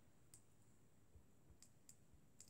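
Near silence with three faint, brief clicks of a stylus touching a tablet screen: one early, two close together near the end.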